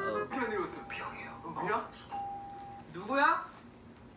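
A doorbell tone ringing steadily, broken briefly in the middle, while voices call out in swooping, rising and falling pitch.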